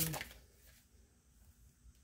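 Near silence: room tone with a faint steady low hum, after a spoken word trails off in the first moment.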